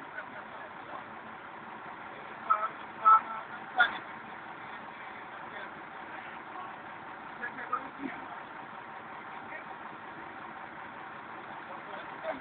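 Steady vehicle engine and street noise, with a few short distant voice-like sounds about three seconds in and again near eight seconds.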